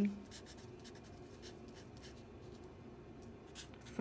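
Felt-tip pen writing on paper: faint, irregular scratching strokes as a word is written out.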